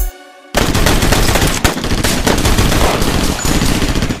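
Gunfire sound effect: a long, unbroken burst of rapid machine-gun-style fire. It starts about half a second in, just after the beat drops out.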